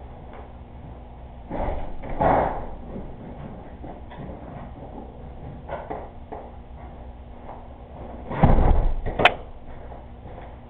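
Door thumps: one with a rattle about a second and a half in, and a heavier one near the end, followed at once by a sharp click.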